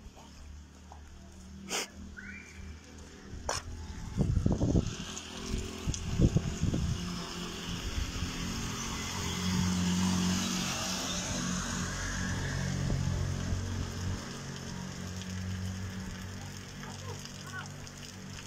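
A small motor vehicle's engine running with tyres hissing through slush on a wet street, growing louder to a peak in the middle and then fading; a few clicks and knocks come near the start.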